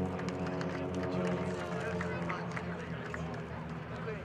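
Steady low drone of propeller trainer aircraft engines flying past in formation, under the chatter of spectators' voices.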